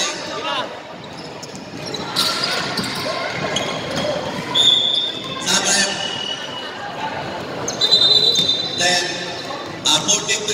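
Basketball bouncing on a hardwood court during play, a few sharp thuds, with short high sneaker squeaks and voices echoing in a large hall.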